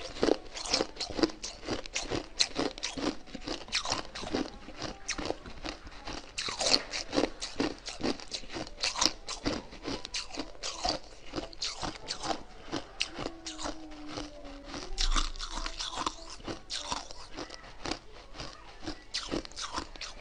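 Close-up crunching and chewing of ice: a continuous run of sharp cracks and crunches as the ice is bitten and ground between the teeth.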